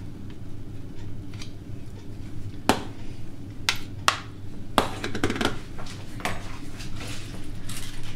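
A metal spoon scraping and knocking against a small bowl and a stainless steel frying pan as butter is scooped into the pan: a handful of sharp clicks and clinks a few seconds in, over a steady low hum.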